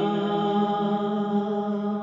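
A man's voice singing a naat unaccompanied, holding one long, steady note.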